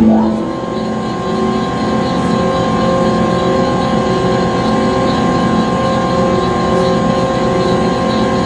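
Conveyor belt machinery running: a steady mechanical drone with several held humming tones over a rumble.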